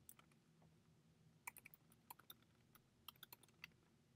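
Faint typing on a computer keyboard: quick runs of keystrokes, a first burst about a second and a half in and a second about three seconds in.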